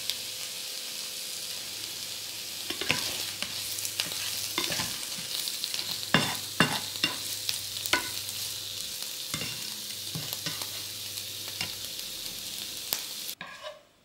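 Diced potatoes and vegetables sizzling in a frying pan, with a spatula scraping and clacking against the pan as they are stirred. The sizzle cuts off suddenly near the end.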